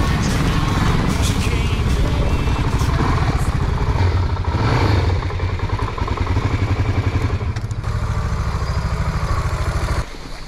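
Suzuki DR-Z400SM single-cylinder engine running at low speed and idling as the bike rolls in and pulls up, with a brief louder stretch about halfway through.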